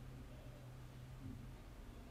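Near silence: faint room tone with a low steady hum that stops about one and a half seconds in.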